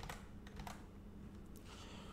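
Faint, scattered light clicks, like keystrokes, over a faint steady low hum.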